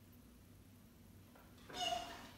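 A dog giving one short, high-pitched whine near the end, after a quiet stretch.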